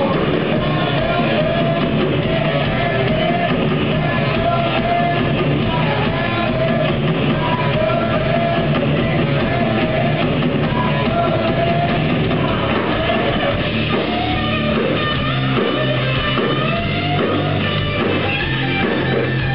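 Live rock band playing loud, with distorted electric guitars, bass and a drum kit and a wavering melody line on top. The low end turns into a more rhythmic, chopped pattern in the last few seconds.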